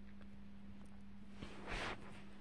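A plastic linking-cube toy block set down on carpet: a faint click, then a brief soft scuff near the end, over a steady low hum.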